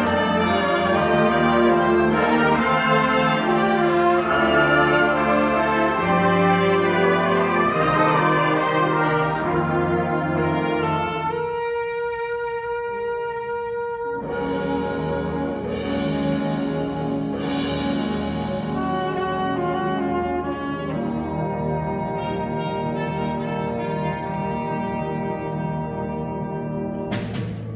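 Live concert band playing loudly, brass to the fore. About eleven seconds in the ensemble drops away to one sustained note for roughly three seconds, then the full band comes back in with three swelling washes of high shimmer.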